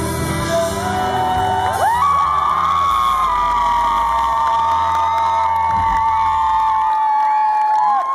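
Live pop band with acoustic guitar and vocals finishing a song, with the audience cheering and whooping over it. A long high note is held through most of it, and the band's bass drops away near the end.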